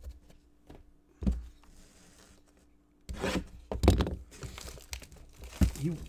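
Plastic shrink wrap being torn and crumpled off a sealed trading-card box, in crackling bursts from about three seconds in, after a single brief knock near the start.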